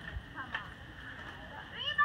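A dog making short, high-pitched whining vocalisations, the talkative whine-howls some dogs make at people: one brief call about half a second in and another rising call near the end.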